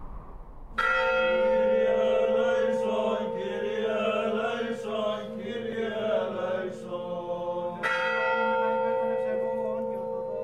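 A large church bell struck about a second in, ringing on with a long steady hum. It is struck again near the end. Wavering chanting voices sound faintly under the ringing in the middle.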